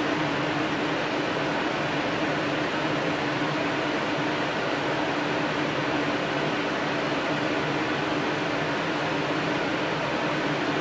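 Steady room noise: an even hum and hiss that does not change.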